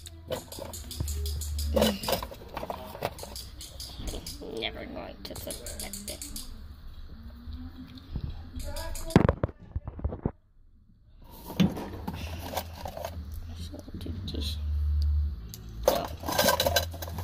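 Rustling, clicks and knocks of objects being handled in a cardboard box and the phone being moved about by hand, with a short laugh and some quiet voices. There is one louder knock about nine seconds in, and the sound drops out for about a second right after it.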